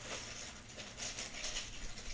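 Small plastic LEGO bricks clicking and rustling faintly as hands sort and handle loose pieces.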